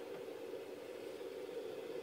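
Quiet room tone: a steady low hum with faint hiss and no distinct sounds.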